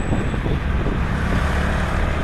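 Honda Pop 110i's small single-cylinder four-stroke engine running steadily as the bike rides along, under wind noise on the microphone and the sound of surrounding road traffic.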